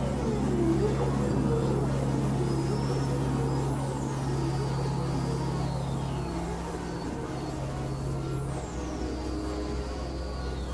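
Experimental synthesizer drone music: steady low drones under wavering, gliding mid-pitched tones, with a high tone that slides down in pitch twice, about four and eight seconds in. Part of the low drone drops out about six seconds in.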